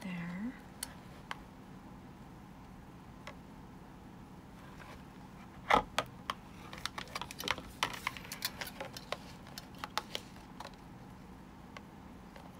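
Scattered light clicks and taps of a metal binder ring mechanism and a marker being handled on a binder cover, with one sharper click about six seconds in followed by a run of small quick clicks.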